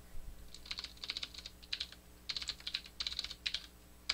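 Typing on a computer keyboard: quick runs of keystrokes in several short bursts, starting about half a second in.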